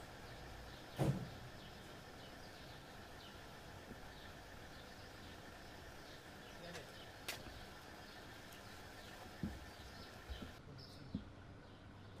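Faint outdoor ambience: a steady low hum like distant traffic, with occasional faint bird chirps. A single sharp knock comes about a second in, and a few softer knocks and clicks follow in the second half.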